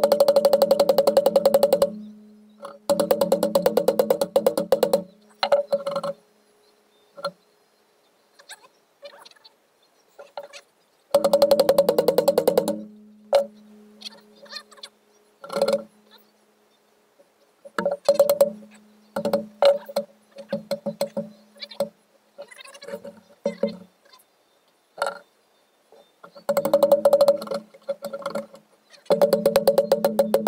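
Runs of rapid hammer taps on a steel antique monkey wrench, each run lasting a second or two with short pauses between, the metal ringing at a steady pitch. The taps are to loosen a part rusted onto the shank.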